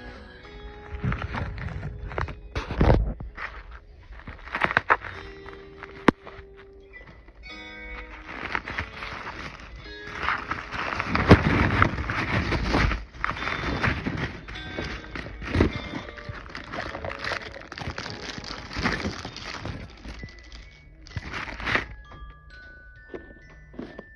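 Tissue paper and plastic wrapping rustling and crinkling in irregular bursts as a small gift is unwrapped by hand, loudest in the middle, over steady background music.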